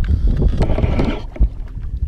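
Wind buffeting the microphone out on open water, a low, uneven rumble, with one short low thump about one and a half seconds in.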